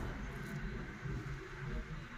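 Steady low rumble of a car driving, engine and road noise heard from inside the cabin.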